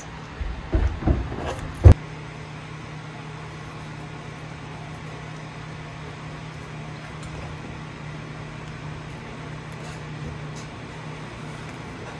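Handling knocks on a work surface: a few dull bumps, then one sharp knock about two seconds in. After that only a steady low hum remains.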